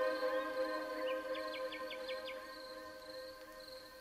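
The end of a lofi chill track fading out: a held chord decays slowly and grows quieter. About a second in there is a brief run of five quick, high chirps.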